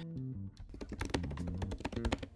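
Computer keyboard typing, a rapid run of key clicks, over background music with stepped plucked notes.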